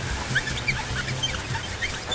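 Ambient electronic synthesizer music: many short, scattered chirps sliding up and down in pitch, laid over a steady low drone.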